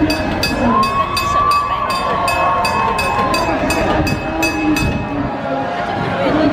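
Trolley bell rung rapidly in a steady run of clangs, about three strikes a second, that stops about five seconds in.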